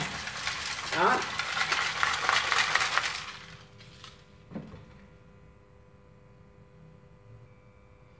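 Ice and salt rattling in a metal pot as it is shaken, a dense grainy rattle for about three seconds, then a single knock of metal.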